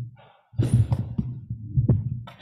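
Microphone handling noise: low, dull thumps and rumble with a few sharp knocks as hands grip and adjust a microphone on its stand. Most of it starts about half a second in, with a loud knock near the end.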